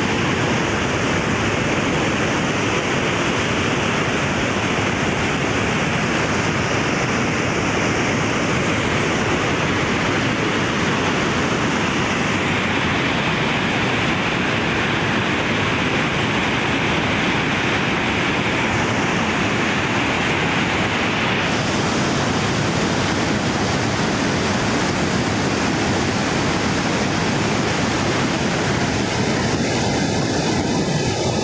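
Muddy floodwater rushing and churning in a swollen river, a steady loud roar of water.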